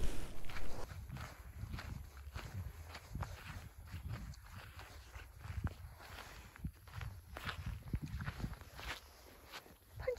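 Irregular footsteps on dry grass and dirt, over a steady low rumble.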